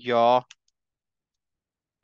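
A man's voice ends a word, followed by one faint short click, then dead silence with no room sound at all.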